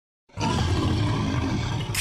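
Lion roar sound effect, starting suddenly about a third of a second in and held as one long, low roar.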